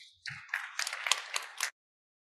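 Brief scattered applause from a seated audience, about a second and a half long, that cuts off suddenly. A soft low thump comes just before it.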